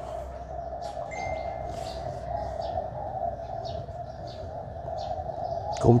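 Small birds chirping in short, scattered calls over a steady background hum.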